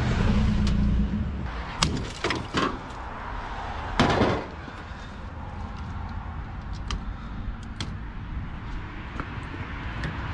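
Sledgehammer blows on washing-machine and dishwasher parts: a few sharp knocks about two seconds in and a heavier crash about four seconds in, then light clicks of parts being handled. A steady low hum is heard briefly at the start.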